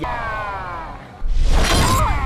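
Dramatic gameshow suspense sound effect: several falling tones glide down together, then a sudden loud crashing hit with a shattering ring about a second and a quarter in.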